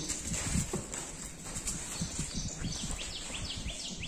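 Goats' hooves shuffling and stepping on the pen's concrete floor, short soft thuds and scuffs. From a little past halfway, a bird chirps rapidly, about four quick falling chirps a second.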